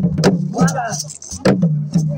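Wooden standing drums beaten with sticks in a quick, uneven run of sharp strokes, over the voices of a crowd.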